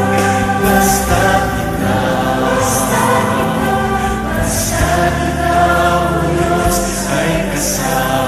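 Tagalog praise and worship song sung by voices over instrumental backing, with long held notes.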